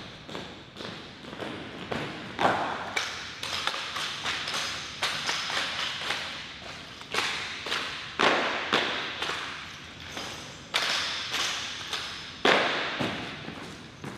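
A rifle drill team marching on a hard floor: a run of footfalls and heel strikes, with several much louder sharp impacts from the drill movements that ring on in the large hall.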